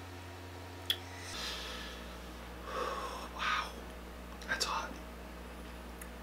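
A person breathing out hard through the mouth in a few short, breathy puffs while eating, after a sharp click about a second in, over a steady low hum.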